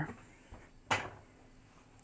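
Office chair's swivel/tilt mechanism being lowered: the seat-height lever is pulled to release the gas cylinder under the sitter's weight, giving a faint click about half a second in and a sharper clack just before a second in.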